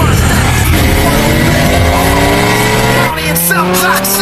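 Race car engines accelerating hard: the engine note climbs steadily in pitch, breaks off about three seconds in as at a gear change, then climbs again.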